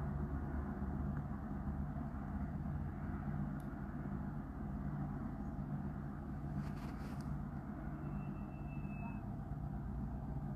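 Recovery truck's engine running at a steady idle. A few light clicks come about two-thirds of the way in, followed by a faint brief high whistle.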